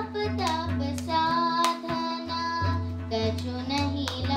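Devotional song: a voice singing a gliding melody over a steady held drone, with light percussion.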